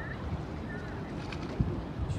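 Steady low rumble of a boat under way on the river, with wind buffeting the microphone and a brief low thump near the end.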